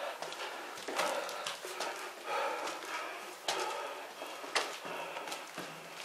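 Footsteps and scuffs on a debris-strewn concrete floor in a small room, a run of irregular knocks about once a second.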